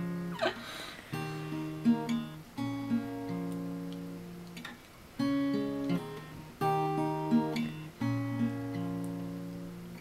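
Acoustic guitar, capoed, playing a slow picked chord progression: each chord rings out and fades, with a new chord about every one and a half seconds.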